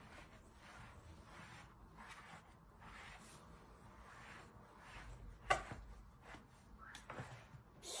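Faint rubbing and handling sounds of hands working on a tall suede boot being pulled on and fitted, with one sharp click about five and a half seconds in.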